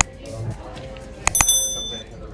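Mouse-click sound effects from an animated subscribe-button graphic: a click at the start, then two quick clicks about a second and a half in followed at once by a short, bright bell ding. Background music runs underneath.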